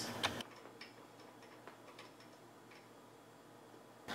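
Faint scattered small metallic clicks and ticks as a splitter clevis is fitted and threaded by hand onto a converter stud in the front bumper bar.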